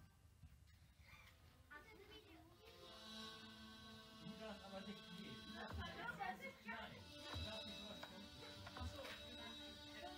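Faint electronic notes played on a MIDI keyboard controller and sounded through a laptop and portable speaker. Several held tones build up from about three seconds in.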